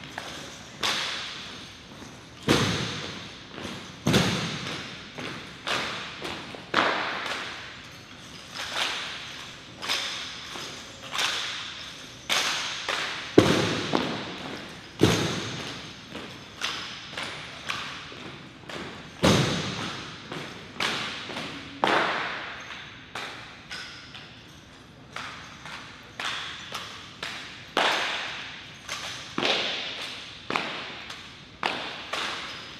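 Rifle drill: an irregular run of sharp slaps, clacks and knocks as hands strike wooden-stocked rifles and rifle butts and heels hit the floor, each ringing off the walls of a large hall. A few heavier thuds stand out, about two and a half and four seconds in, again around thirteen to fifteen seconds, and near nineteen seconds.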